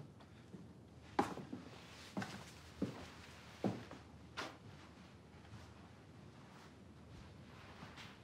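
Footsteps of two men walking into a room: about five faint, unevenly spaced steps in the first half.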